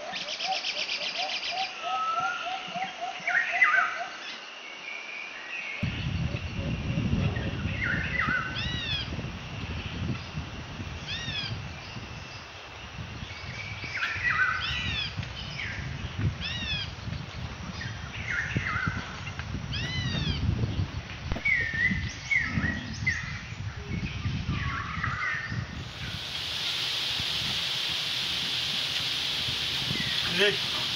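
Several birds calling and chirping, with short repeated notes that dip and rise. A low irregular rumble joins in about six seconds in, and near the end a steady hiss takes over.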